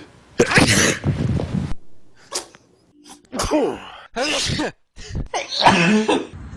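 A run of human sneezes from different people, several short loud bursts a second or so apart, some with a voiced 'achoo'.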